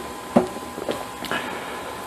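A few small clicks and taps from fingers working a smartphone's touchscreen and case, the sharpest about a third of a second in. Under them is a faint steady hum.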